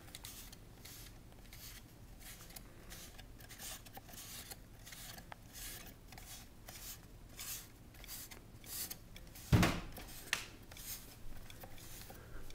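Faint, repeated rasping as a mousetrap car's CD rear wheels are turned by hand to wind its string around the rear axle, about two or three strokes a second. One sharp knock comes about three quarters of the way through.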